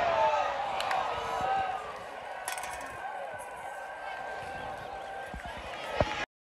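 Stadium crowd cheering dying away over the first two seconds into scattered voices and chatter, with a single sharp click about halfway through.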